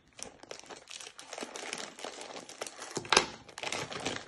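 Plastic food packet crinkling and rustling as it is snipped open with scissors and handled. A sharper click comes a little after three seconds in.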